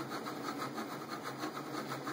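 mUVe 1 resin 3D printer running a print: a steady mechanical whir with a fast, even pulsing.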